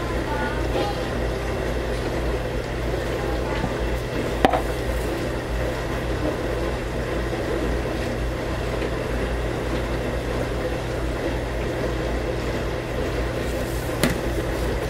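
A steady low mechanical hum with a light background wash of noise, broken once by a sharp click about four and a half seconds in.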